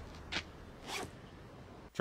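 Two faint, brief swishing scuffs from a man moving, about half a second apart.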